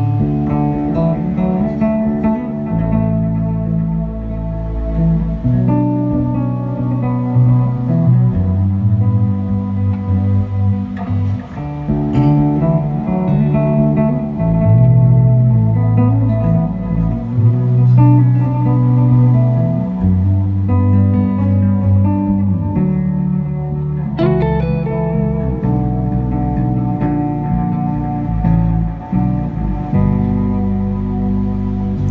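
Live band music led by an electric bass playing a melodic part of low held notes that step from chord to chord, built on the root and third of each chord, with guitar above it.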